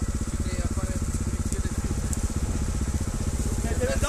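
Trials motorcycle engine idling steadily with a rapid, even beat.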